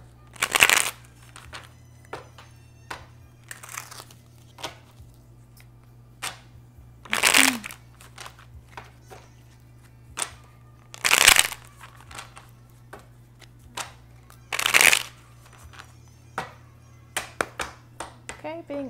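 A deck of tarot cards being shuffled by hand: four loud bursts of cards riffling, each about half a second, spaced a few seconds apart, with soft card clicks and taps between them.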